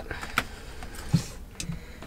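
Handling noises as tools are picked from a foam-lined tool drawer: a few small clicks and knocks, with a short scraping rustle in the middle.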